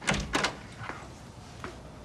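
A door being worked: two sharp thuds about a third of a second apart, then a few fainter clicks.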